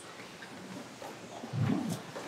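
Quiet murmur and movement of a church congregation and choir exchanging the peace, with one brief low voice near the end.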